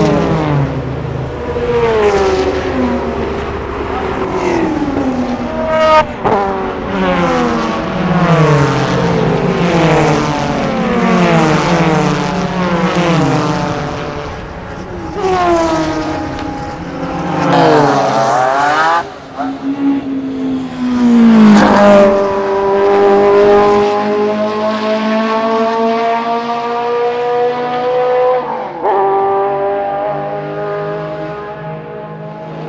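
Ferrari Testarossa's flat-twelve engine revving up and down repeatedly as the car is driven hard. About two-thirds of the way in, the pitch drops sharply twice, then settles into a steady, slowly rising note as the car accelerates.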